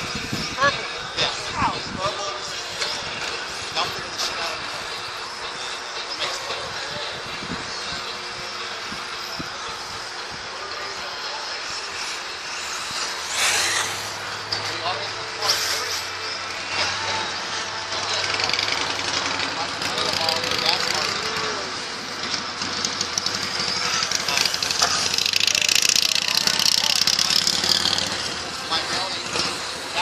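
Radio-controlled off-road cars running on a dirt track, their motors rising and falling as they accelerate and brake, with a stretch that grows louder in the second half.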